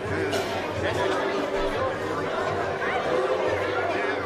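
Steady chatter of several people talking at once, overlapping voices with no single speaker standing out.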